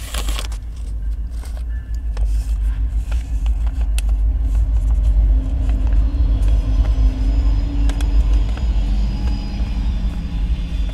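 Car engine idling, heard inside the cabin as a steady low rumble, with scattered crinkles and clicks as a slip of paper is handled.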